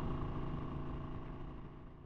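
1991 Harley-Davidson FXR's V-twin engine idling steadily, fading out near the end.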